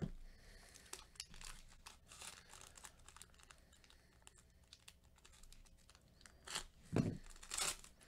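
Crinkling and tearing of a Topps Chrome jumbo pack's foil wrapper as gloved hands open it: quiet, irregular crackles throughout, then louder crinkling bursts near the end.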